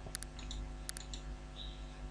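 Computer mouse clicks: two quick pairs of clicks, one just after the start and one about a second in, over a faint steady hum.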